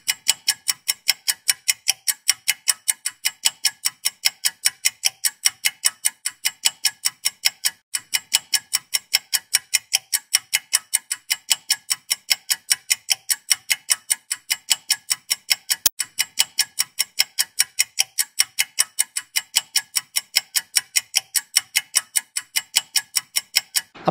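Clock-style ticking sound effect, as used for a countdown timer: even, rapid ticks at about four a second, with one brief break about eight seconds in.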